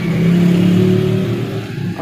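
A motor vehicle engine running, a steady low drone that is loudest in the first second and eases off toward the end.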